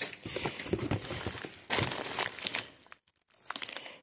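Plastic food packets and wrappers crinkling and rustling as hands rummage through a box. The rustling stops for a moment about three seconds in.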